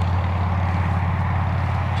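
A steady low mechanical hum, constant throughout.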